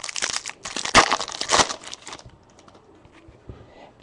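Crinkling and tearing of a baseball trading-card pack wrapper as it is torn open, dense crackling for about two seconds, then a few faint clicks.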